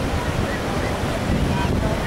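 Wind buffeting the microphone over a steady rush of surf breaking on the shore.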